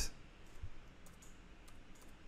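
Faint, scattered clicks of computer keys being typed.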